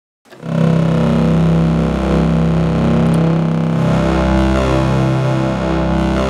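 Polyphonic analog synthesizer chords from a chain of Moog Slim Phatty synths played from a Little Phatty keyboard. Thick, held chords start about half a second in, and the chord changes about four seconds in.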